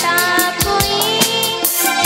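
A girl singing into a microphone over live electronic keyboard accompaniment with a steady beat.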